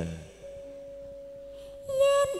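A soft, steady, pure held note with a fainter note an octave below it, lasting about a second and a half; near the end a woman's singing voice comes in on the same pitch.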